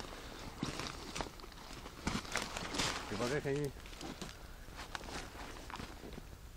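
Footsteps and rustling in dry grass and leaf litter on a riverbank, in scattered crunches, loudest around the third second. A brief voice sounds about three seconds in.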